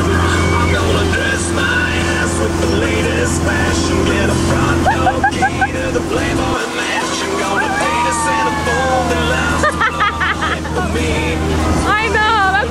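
Steady low drone of a tow boat's engine with rushing wake water, its tone shifting abruptly about halfway through. Gliding, wavering calls sound over it in the second half.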